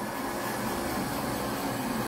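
Handheld hair dryer running steadily, a constant rush of blown air with a faint low motor hum, aimed at a dog's wet fur.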